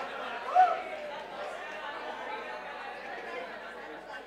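Several voices of a class chattering at once, overlapping and indistinct, with one voice briefly louder about half a second in.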